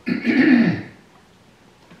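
A man clearing his throat once, a short rasp lasting under a second.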